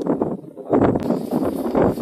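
Several men's voices outdoors, talking over one another in a crowd.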